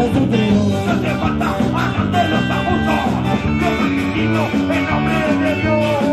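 Punk rock band playing live: distorted electric guitars, bass and drums in a steady, driving rhythm, picked up by a camera's built-in microphone.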